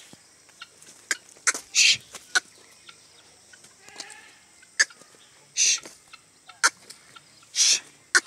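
Helmeted guineafowl calling: a string of short, harsh, high-pitched calls, with three longer hissing calls about two seconds apart near the middle and end.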